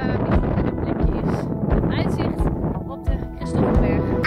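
Strong wind buffeting the microphone in rough, irregular gusts, over steady background music.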